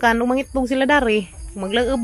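A person's voice talking in short phrases, over a faint, steady high-pitched buzz.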